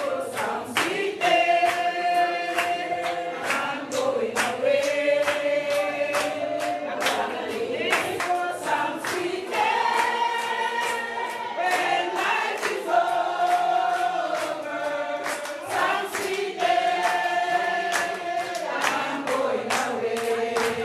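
A congregation singing together in unison, with handclaps keeping a steady beat about twice a second.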